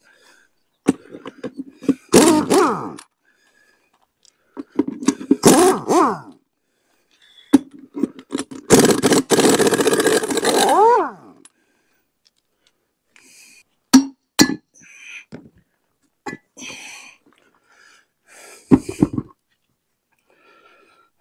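Pneumatic impact wrench hammering loose the bolts on a steel hay rake wheel in several bursts, the longest about two and a half seconds, its pitch rising as each bolt breaks free and spins. Later come short metallic clinks of the loosened parts being handled.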